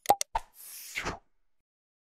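Animation sound effects: three quick clicks with a short pop among them, then a falling whoosh lasting about half a second.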